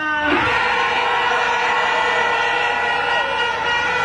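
A steady held tone with several pitches sounding together, setting in a moment after the start and holding level without a break.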